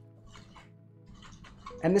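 Metal cocktail shaker being shaken hard with no ice, a dry shake of an egg-white mix, giving faint irregular clicks and knocks from the tins, under soft background music.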